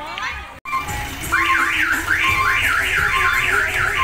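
Electronic siren horn on a mini tourist train sounding a fast repeated rising whoop, about two or three sweeps a second, starting a little over a second in.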